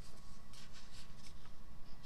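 Light scratching and rubbing of a hand and pen on a paper worksheet, a few faint short strokes, over a steady low hum.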